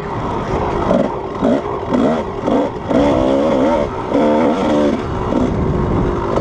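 Kawasaki KDX220's two-stroke single-cylinder engine heard on board while it is ridden on a dirt trail, its pitch rising and falling with the throttle.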